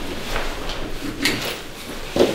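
A few light, irregular knocks and scuffs of people moving about a meeting room as they leave, with wooden chairs and belongings being handled.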